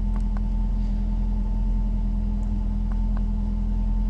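Ford Galaxy's engine idling steadily, with a few faint clicks over it.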